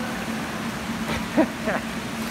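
Pool water splashing and sloshing as several people do squats standing on foam barbells, over a steady low hum. Short voice sounds and a laugh come in the second half.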